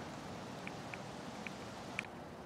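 Quiet outdoor background with three or four faint, short high ticks spread through it and a small click at the very end.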